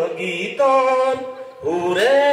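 A man singing into a microphone, holding long notes in short phrases with brief breaks between them.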